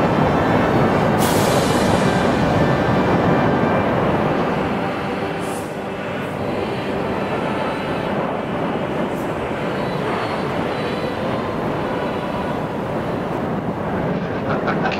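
Loud, steady rumbling roar of a churning lava lake, with a falling hiss about a second in.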